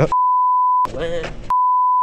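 Two censor bleeps, each a single steady pure tone that blanks out all other sound: the first lasts most of a second, then a brief snatch of speech is heard, then the second bleep begins about one and a half seconds in.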